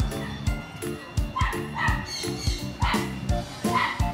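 Upbeat background music with a steady beat. Over it, a dog gives about four short yips in the second half.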